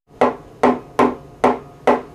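A knife point stabbing down onto a tabletop between spread fingers, five even knocks about twice a second, each with a short ringing decay.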